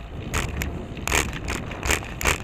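Riding a bicycle on a city street, heard from a camera on the bike: a steady low rumble of wind and tyres on the pavement, with four short, sharp knocks at uneven intervals.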